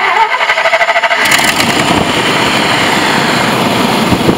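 Truck engine being cranked by its starter and catching about a second in, then running loudly and steadily.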